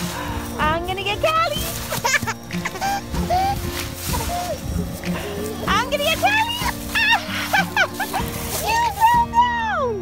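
Background music with steady held chords, over which young children's high voices squeal and call in short bursts. Near the end comes one long high squeal that falls in pitch as it stops.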